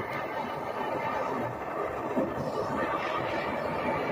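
Handheld gas torch burning steadily, its flame being played over dry wood to scorch it.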